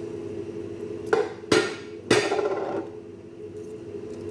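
A metal utensil knocked against a cooking pot: three sharp clanks in quick succession starting about a second in, the last one ringing briefly, over a steady low hum.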